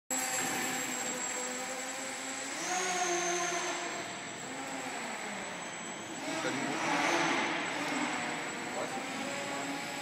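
Radio-controlled model hovercraft's propeller motor running, its pitch rising and falling as the throttle is worked, with a louder rush of air about seven seconds in. The sound echoes around a large sports hall.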